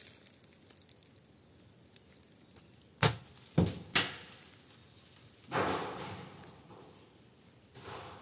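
An object dropped down a deep cave shaft, striking the rock three times in quick succession as it falls, then a longer clatter from further down that fades out over about two seconds.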